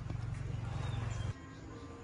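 Footsteps on wooden stairs with rumbling handheld-camera handling noise, which drops off abruptly just over a second in.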